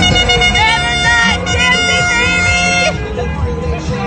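A horn sounds one long steady note for about three seconds, over loud party music and voices.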